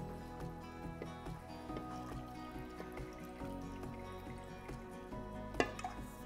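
Soft background music, with water faintly pouring from a jug into a Cecotec Olla GM's slow-pot bowl as it is filled to the brim.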